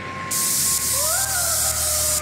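Electronic dance track: a loud wash of white-noise hiss switching in and out in half-second blocks over a held synth chord. The chord glides up in pitch about a second in, and a low bass comes in about halfway through.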